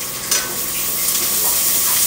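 Food sizzling as it fries in hot oil in a pan while being stirred, with a sharp knock of the spoon on the pan about a third of a second in.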